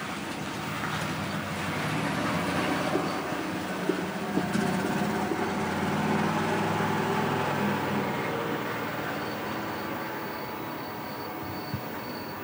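A steady mechanical rumble from a large vehicle, swelling over the first few seconds and easing off toward the end, with a faint high whine near the end.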